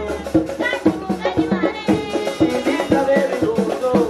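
East African traditional dance music: drums beating a quick steady rhythm, about three strokes a second, with rattles and group singing over it.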